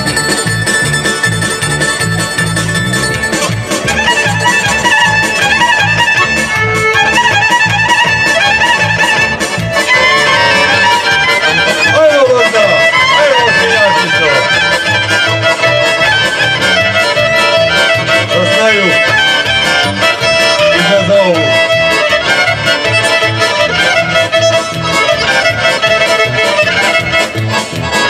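Serbian folk music for a kolo circle dance, playing with a steady beat and a gliding melody line.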